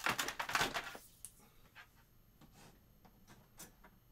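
Hands handling cables and connectors on a bare computer logic board: a quick run of rattling clicks in the first second, then a few faint clicks.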